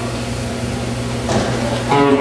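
Live band's amplified stage sound before the song: a steady hum from the amplifiers under room chatter, with two sharp hits late on that lead straight into the song.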